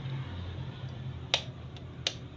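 A metal fork tapped sharply against a raw eggshell to crack it: one crisp tap about a second and a half in and another right at the end, over a low steady hum.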